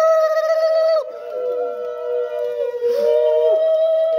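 Conch shells (shankha) blown in long, steady notes, two at slightly different pitches overlapping. The loudest note breaks off about a second in and a fresh one starts near the three-second mark.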